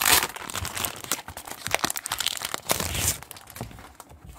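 Clear plastic wrapping crinkling as it is handled and pulled off a notebook, in a run of sharp crackles that is loudest at the start and dies down near the end.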